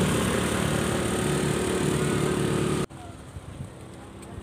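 Motor scooter engine running steadily close by. It cuts off abruptly about three seconds in, leaving a quiet outdoor background.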